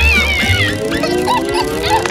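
Cartoon background music with a character's high, squeaky, meow-like vocal noises at the start, then a long tone that rises in pitch through the second half.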